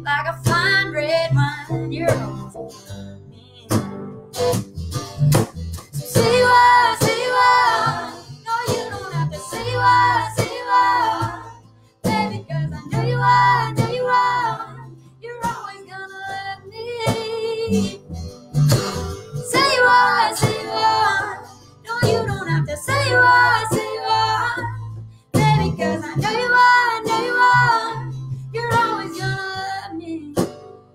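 Women singing a slow country love song live, phrase after phrase with short breaks, over guitar accompaniment.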